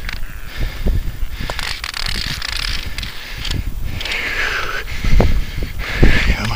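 Rustling and scraping of winter jacket sleeves and gloves as fishing line is hauled hand over hand up through an ice hole, with scattered clicks over a low rumble on the microphone.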